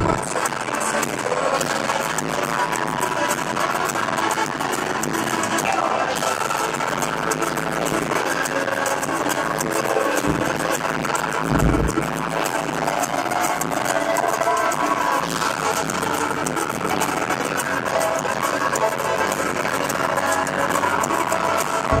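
Live band music in an arena, with acoustic guitar and drums playing through the PA. There are two deep thuds near the middle.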